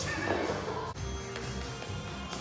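Background music playing, with a light PVC training pipe dropping and clacking on the gym floor about a second in.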